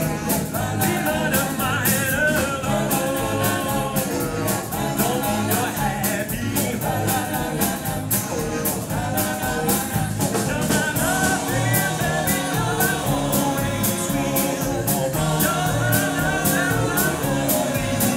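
Live vocal group, several singers at once, over a backing band with electric guitar and a steady beat.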